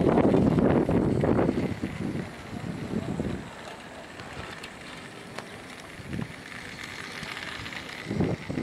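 Wind buffeting the microphone, loudest in the first second and a half, then a lower, uneven rush.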